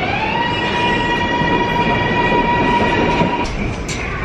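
Electric New York subway train moving off: its motors make a whine that rises in pitch, levels off into a steady high tone and fades about three seconds in, over the train's rumble.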